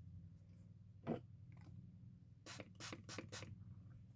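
Quiet handling of makeup tools: one light tap about a second in, then a quick run of about five short scratchy strokes, like a brush worked against an eyeshadow palette, over a steady low hum.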